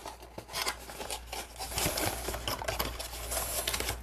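Hands opening a cardboard product box: the end flap pulled free and the inner cardboard carton sliding out, a run of irregular scrapes, rustles and small clicks.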